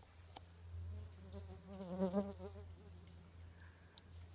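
A flying insect buzzing close by for about a second in the middle, its pitch wavering up and down as it moves. Faint high chirps can be heard around it.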